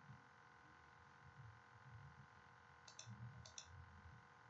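Near silence with a faint steady hum, broken about three seconds in by a few faint computer mouse clicks as a presentation slide is advanced.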